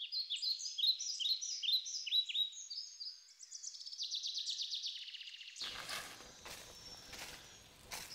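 Birds chirping: quick runs of short, falling high chirps, with a fast trill of notes around the middle. About two-thirds of the way through, open-air background noise with a few faint crackles comes in beneath them.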